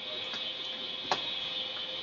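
A single sharp computer mouse click about a second in, with a few fainter ticks, over the steady hiss of a desktop microphone.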